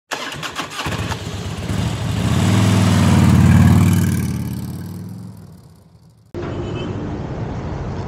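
A motorcycle engine sound effect in a logo intro. A few clicks as it starts, then the engine note swells to a loud peak and fades away like a bike passing by. About six seconds in it cuts abruptly to the steady road noise of a motor scooter ride.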